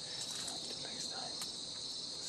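Steady, high-pitched chorus of insects trilling continuously, with a couple of faint ticks over it.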